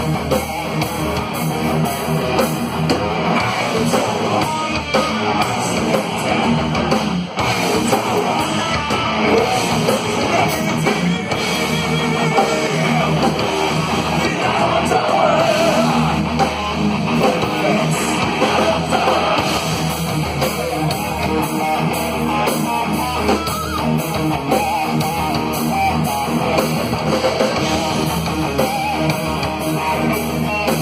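A heavy metal band playing loud live: distorted electric guitars, bass guitar and a drum kit, continuous throughout.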